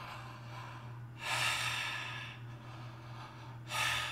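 A man taking deep breaths from the diaphragm through a wide-open mouth: a long, loud breath about a second in and a shorter one near the end.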